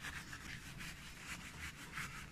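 Cloth rubbing dubbin into a leather turn shoe: faint, quick, even back-and-forth strokes of cloth on leather.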